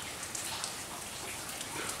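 Steady, light rain falling on leaves and surfaces, a soft even hiss with scattered individual drops ticking through it.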